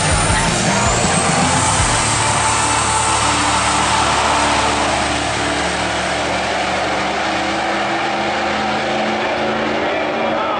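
Ford Power Stroke diesel pickup launching at full throttle down a drag strip, its engine noise climbing in pitch over the first two seconds. The sound then carries on more steadily and a little quieter as the truck pulls away down the track.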